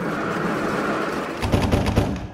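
Sound effect of many doors slamming shut at once: a rushing swell of noise, then a rapid volley of bangs about one and a half seconds in that rings on briefly.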